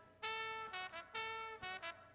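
Recorded trumpet line played back through a mixing console's channel noise gate: two held notes of about half a second and two short ones, with near silence between the notes as the gate closes.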